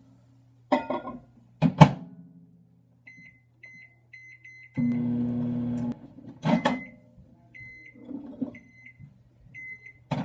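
Microwave oven in use: sharp clicks from the door and keypad, a low electrical hum that swells for about a second midway, and short high beeps in two runs.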